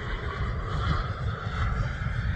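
Radio-controlled F-15 Eagle model jet flying overhead, its engine a steady whine. Heavy, gusty low rumble of wind on the microphone.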